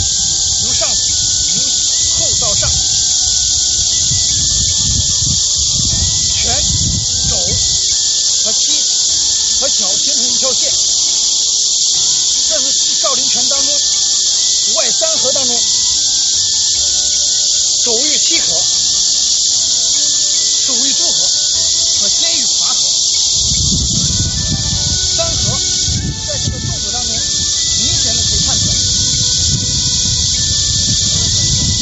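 A loud, steady, high-pitched insect chorus hiss, with faint background music of held notes underneath. Low rumbling gusts come in the first several seconds and again from about 23 seconds in.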